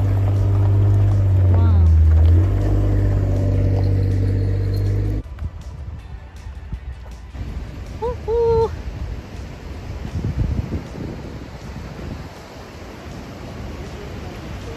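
Jeep Wrangler's engine running steadily as it drives slowly along a gravel track, with one step in pitch about two seconds in. It stops abruptly about five seconds in. Quieter background noise follows, with a short rising-and-falling voice-like call about eight seconds in.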